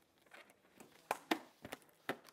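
Faint handling noises at a lectern: a scatter of light clicks and rustles, about half a dozen, as a rubber balloon is picked up.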